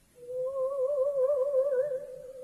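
A woman's voice singing softly: one long held note with a wide vibrato, starting a moment in.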